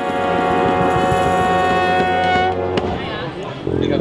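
Street brass band of saxophones and sousaphone playing a sustained chord, which breaks off briefly about three seconds in before a new chord with a low sousaphone bass comes in near the end.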